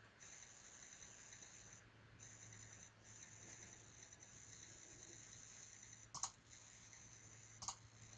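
Near silence: steady low hum and faint hiss, broken near the end by two computer mouse clicks about a second and a half apart.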